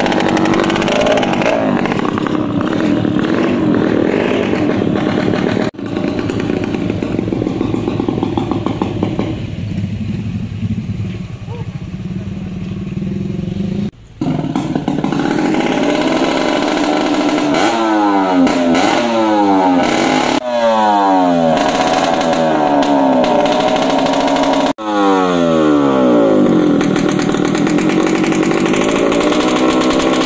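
Small two-stroke motorcycle engine fitted with a loud aftermarket open exhaust (knalpot brong), running loud and being revved repeatedly, its pitch sweeping up and down several times in the second half. The sound breaks off abruptly a few times between clips.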